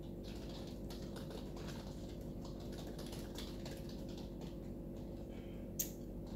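Typing on a computer keyboard: a run of light, irregular key clicks with one sharper click near the end, over a low steady hum.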